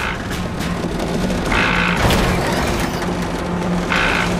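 Dramatic background music over rumbling, clanking mechanical sound effects of a robot's crane cable straining to haul something up out of a hole, with a few sharp knocks.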